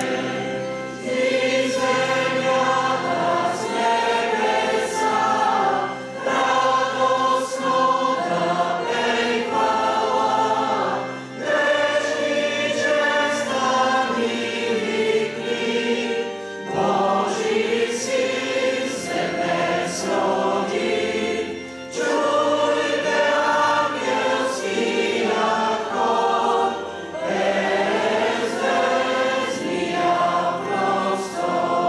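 Church choir singing a song in phrases of a second or two, with a keyboard accompanying it.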